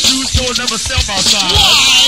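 Live go-go band playing a groove, with repeated low drum hits and a voice rapping over the music.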